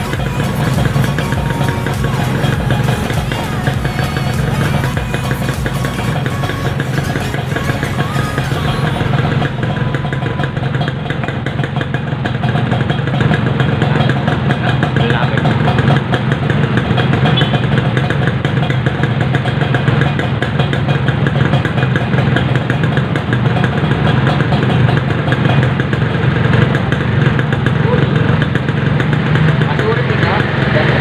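Two two-stroke single-cylinder motorcycle engines, a Yamaha RX-King and a Kawasaki Ninja 150, idling steadily side by side, running on the fuel left in their carburettors after the fuel taps have been shut off. The high hiss in the sound drops away about nine seconds in.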